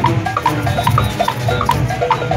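Junkanoo band music: drums, cowbells and brass horns playing together in a fast, steady rhythm.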